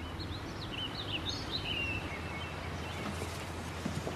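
Birds chirping, a few short twittering calls in the first two seconds, over a steady low background rumble of outdoor ambience.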